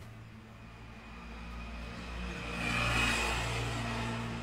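A motor vehicle passing close by: its sound swells to its loudest about three seconds in, with a brief whine at the peak, then begins to ease off, over a steady low hum.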